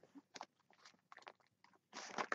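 A few short, faint snips of scissors cutting into a plastic mailer bag and its duct tape.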